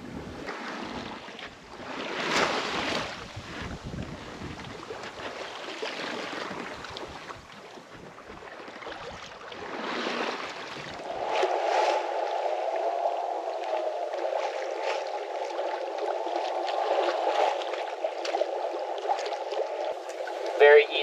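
Sea water rushing and splashing along the hull of a small sailboat under sail, with wind, swelling louder about two seconds in and again near ten seconds. From about eleven seconds in the sound turns thin and muffled, a steady hiss with no low end.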